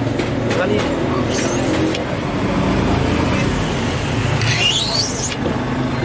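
A blade scoring a red acrylic sheet along a metal straightedge, with two short rising scraping strokes. Under them runs a steady low engine hum.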